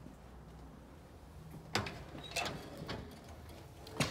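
Clicks and knocks of a front door being handled and opened, the first and loudest a little before halfway through, then several lighter ones.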